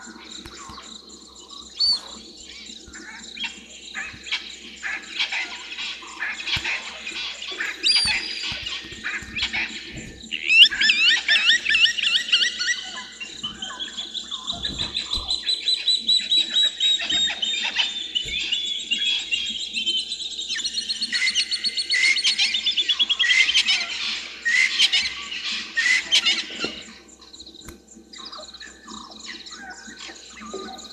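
Wild birds calling and chirping over a faint steady background of insects, busiest through the middle, where a long run of rapid, evenly pulsed notes slowly falls in pitch; the calls thin out near the end.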